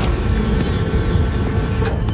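Steady low mechanical rumble with faint steady tones above it, with a click at the start and another near the end.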